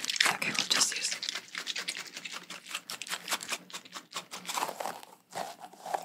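Two freshly washed, tacky squishy stress balls filled with water beads, squeezed in the hands and pressed together, their sticky rubber skins giving a rapid run of crackling, peeling clicks.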